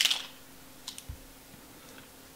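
Light handling of a coiled USB cable: a rustle that fades out at the start, then a few faint clicks and a soft knock about a second in.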